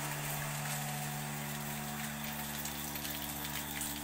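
Milking machine's vacuum pump running, a steady even hum with a hiss over it.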